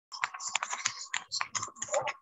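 Computer keyboard typing: a quick, irregular run of key clicks picked up over a video-call microphone.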